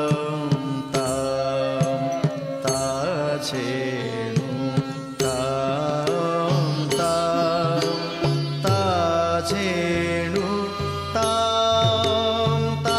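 Odissi classical dance music: a melodic line gliding up and down in pitch over a steady low drone, with mardala drum strokes.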